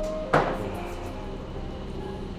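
A single sharp click about a third of a second in, as the safety cap is snapped off the trigger of a Water Gold CC coating spray bottle, over quiet background music.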